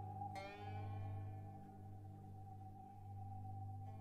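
Orchestral music with tape, from a modern symphony. About half a second in, a note with a sharp attack rings out and fades over a steady held high tone and a low drone. Another such note comes near the end.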